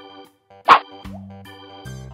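Light keyboard background music with a single short pop sound effect about two-thirds of a second in, at the end of a quiz countdown as the answer is marked.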